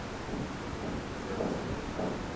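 Steady low rumble with hiss: constant background noise with no distinct event.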